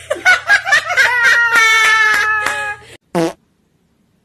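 A long, loud fart with a rapid flutter, squeaky and held at a steady pitch for over a second before it stops about three seconds in. A short second burst with a falling pitch follows right after it.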